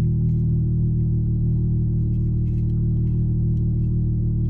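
Steady low hum of a 2019 Dodge Charger SXT's 3.6-litre V6 idling, heard inside the cabin.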